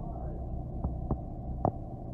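Steady low rumble of a city bus heard from inside the cabin, with three short sharp clicks in the second half, the last the loudest.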